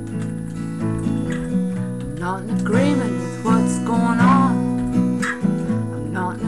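Acoustic guitar strummed in a steady chord pattern, with a woman's voice singing over it from about two seconds in until near the end.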